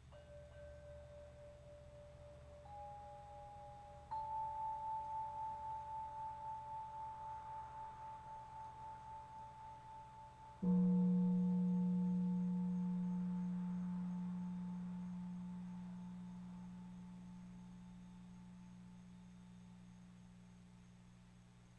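Three clear, sustained ringing tones enter one after another, the last one pulsing as it fades. About ten and a half seconds in, a gong is struck once with a mallet: a deep tone, the loudest sound here, that rings on and slowly dies away.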